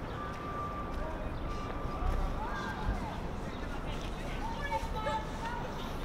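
Outdoor city-park ambience: a steady low background rumble with indistinct voices of passers-by.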